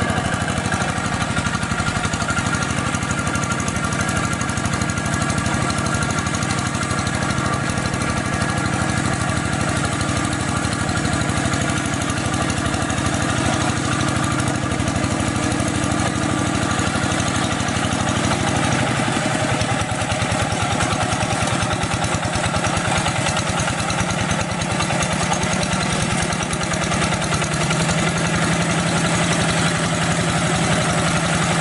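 Two-wheel hand tractor's single-cylinder diesel engine running steadily under load as its cage wheels till a flooded rice paddy; its pitch shifts about two-thirds of the way through.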